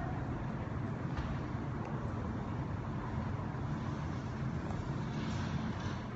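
Steady low rumble with a faint hum, and a few faint knocks.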